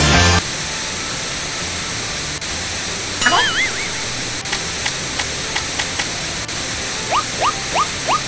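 Cartoon sound effects over a steady static-like hiss. The music cuts off about half a second in. About three seconds in comes a warbling, rising whistle, and near the end a run of short rising squeaks, about three a second.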